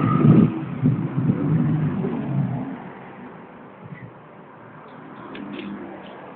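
A vehicle engine running, loud at first and fading away over about three seconds, leaving faint background noise.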